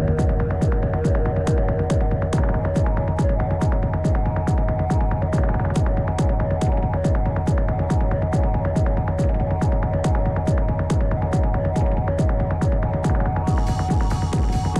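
Background electronic music with a steady beat of a little over two beats a second over held synth tones. It sounds muffled, with the treble filtered away, until near the end, when the full bright sound comes back in.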